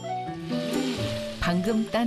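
Tap water running and splashing over a handful of chili peppers being rinsed by hand over a tub, a steady hiss of spray, with background music underneath.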